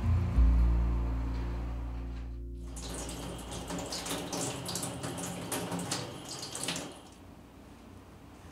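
Background music fades out over the first couple of seconds. Then water from a kitchen tap runs and splashes over hands being washed in a stainless steel sink, starting just under three seconds in and stopping about seven seconds in.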